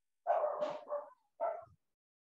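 A dog barking over a video call microphone: a quick run of barks, then one more bark.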